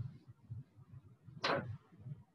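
A single quick dry-erase marker stroke on a whiteboard about one and a half seconds in: a short swish that falls in pitch. A faint low room rumble sits underneath.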